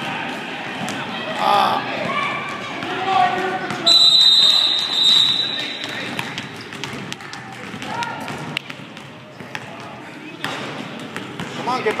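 Indoor gym noise during a kids' basketball game: voices from the crowd and court, with a basketball bouncing and short knocks on the floor. About four seconds in, a single shrill whistle blast, held for nearly two seconds, is the loudest sound; it is likely the referee stopping play.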